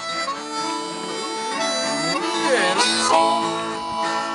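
Harmonica playing a bluesy line with a bent note near the middle, over a strummed acoustic guitar.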